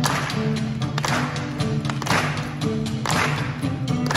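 Live folk-rock band playing an instrumental intro on acoustic and electric guitars, with steady held notes and a sharp beat about once a second.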